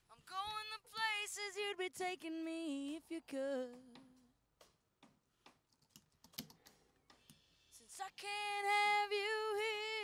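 A female lead vocal track playing back on its own: one sung phrase for about four seconds, then a long held note from about eight seconds in. In the gap between them comes a run of clicks on the computer.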